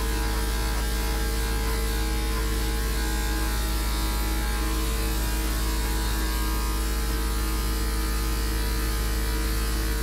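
Electric dog grooming clipper running with a steady hum as it trims the dog's face, over a strong deep background hum.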